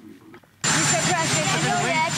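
Loud, steady helicopter turbine noise with a high, constant whine, cutting in suddenly about half a second in, with reporters' voices calling out over it.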